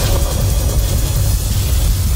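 A loud, steady, deep rumble with an even hiss over it: a sound-effects bed of storm wind on an ice face, with no clear tune or voice.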